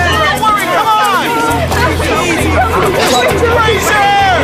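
Several voices talking and calling over one another, with background music underneath and a low bass that pulses on and off about once a second.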